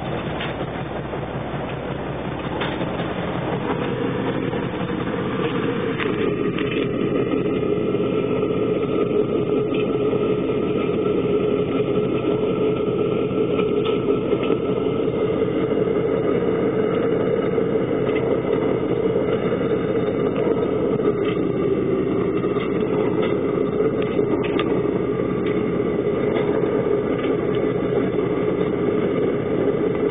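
Wichmann 3ACA three-cylinder two-stroke diesel of the boat running steadily under way at good speed, heard from the wheelhouse. It grows louder a few seconds in, then holds.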